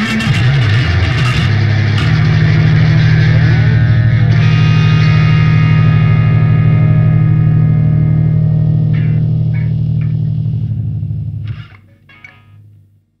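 Rock band of drums, distorted electric guitars and electric bass hitting the closing accents of a punk song. About two seconds in, the band lands on a final chord that the guitars and bass hold and let ring for about nine seconds. The chord is cut off sharply near the end.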